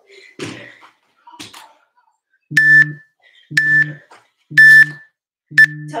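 Electronic interval timer beeping four times, about a second apart and the last one shorter: a countdown marking the end of a work interval.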